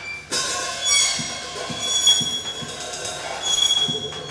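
Experimental performance soundscape of high, sustained metallic screeching tones, like squealing train wheels, that swell and fade over irregular low thuds.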